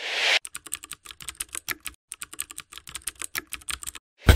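A short whoosh, then rapid computer-keyboard typing clicks with a brief pause about halfway through: a typing sound effect.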